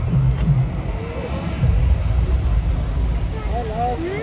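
A steady low rumble with faint voices over it.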